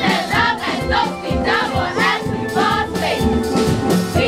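Steel drum band playing, with a group of voices singing along.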